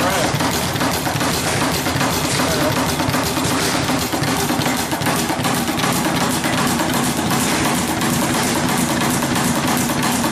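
Speed bag being hit in a fast, continuous rattle, the bag rebounding off its wooden platform, with music playing underneath.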